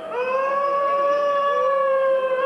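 A live rock band's music: one long high held note that slides up into pitch at the start and is then sustained with a slight waver.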